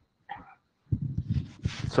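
A man's voice at a meeting-room microphone: a short faint sound about a third of a second in, then hesitant vocal sounds from about a second in that run into speech near the end.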